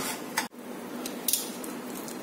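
A wooden spoon stirring dry-roasting semolina in a nonstick pan, with a brief scrape just before the sound cuts off sharply. Then a steady low hiss, with one more short scrape about a second in.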